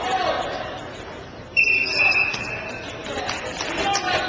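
A referee's whistle blown once, a single steady high blast of under a second about halfway through, over the voices and chatter of a gym crowd.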